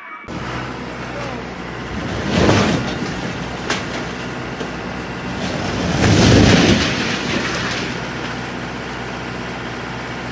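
Demolition collapses: a heavy rumble a couple of seconds in, then a longer, louder crash and rumble about six seconds in as a tall farm silo topples and hits the ground.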